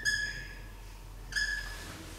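Felt-tip marker squeaking on a whiteboard in two short strokes, one right at the start and one about a second and a half in, each a steady high squeak.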